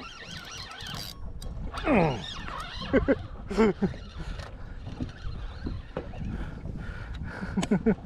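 Laughter and excited wordless voices, with one long falling whoop about two seconds in, over a steady low background rush.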